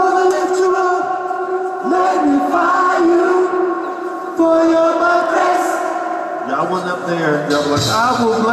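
Large mixed gospel choir singing held chords with a long echo from the cathedral, the harmony shifting every couple of seconds. A lower voice comes in during the last second and a half.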